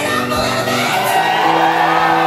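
Punk rock band playing live at full volume in a hall, with guitar, bass and drums sounding sustained chords. Crowd whoops and shouts mix in over the band.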